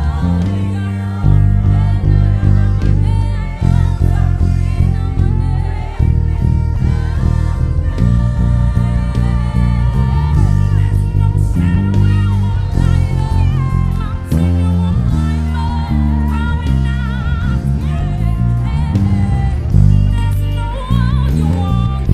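Extended-range electric bass with a low B string playing a gospel bass line of sustained low notes, along with a recorded gospel song in which a singer and choir sing with vibrato.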